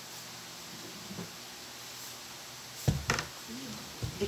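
Quiet kitchen room tone, then about three seconds in a short sharp knock and clatter of a stainless mixing bowl being lifted and handled.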